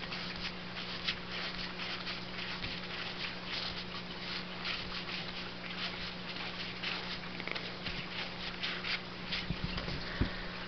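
Stack of trading cards being handled and flicked through by hand: soft papery rustles and light clicks, over a steady low hum.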